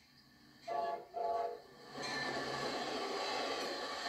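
Amtrak Illinois Zephyr passenger train sounding two short horn blasts, then rushing past close by, the locomotive and coaches making a steady loud rumble on the rails from about halfway in. It is heard through a TV speaker.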